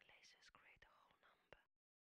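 Near silence: only a barely audible whisper-like voice, which stops shortly before the end.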